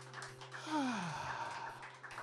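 The last chord of an acoustic guitar rings out and fades, then a breathy voice gives a short exclamation that falls steeply in pitch, about half a second long, just before the middle.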